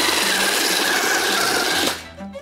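Small electric food processor running, its blade churning hard chunks of dried sarsaparilla root with a gritty rasping over a steady motor whine, then cutting off suddenly near the end. The root is so hard that the blade barely cuts it.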